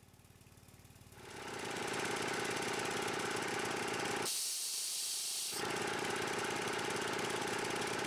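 Gasoline-engine-driven high-pressure air compressor running steadily, fading in after about a second. A little past the middle a condensation drain valve is opened, and air and condensate blow out with a loud hiss for about a second before the running resumes.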